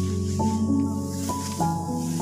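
Background instrumental music: held notes that step to new pitches every half second or so over a sustained low bass.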